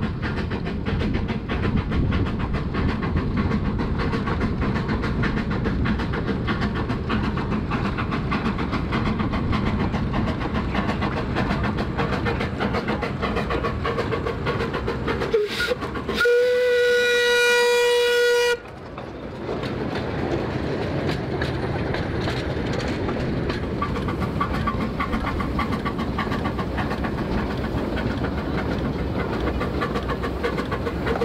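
Small narrow-gauge steam locomotive working along with its train, with a continuous exhaust and running noise. About sixteen seconds in, its whistle sounds one steady note for about two seconds.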